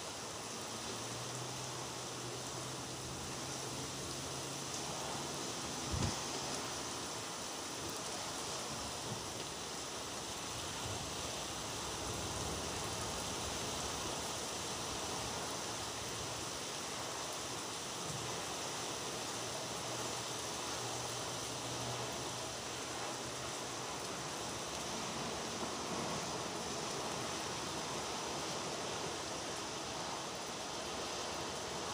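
Steady rain falling, an even hiss throughout. A faint low hum comes and goes twice, and a single thump sounds about six seconds in.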